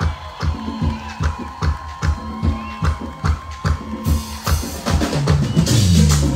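Live merengue band playing a drum-led passage: steady drum strikes about four a second, with bass guitar notes coming back in about four and a half seconds in.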